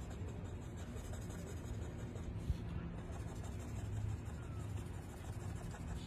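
Pen strokes scratching faintly on a board as a man draws, over a steady low background rumble, with one small tick about halfway through.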